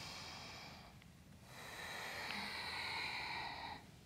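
A woman breathing audibly and slowly, in time with a slow spine-circling yoga movement: one breath tails off about a second in, then a longer breath of about two seconds follows.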